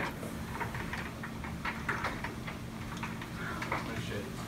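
Scattered small clicks and knocks of people moving about a room, over a steady low hum.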